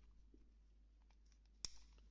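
Near silence broken by one short, sharp click about one and a half seconds in, from a Beretta 84F pistol being turned over in the hand.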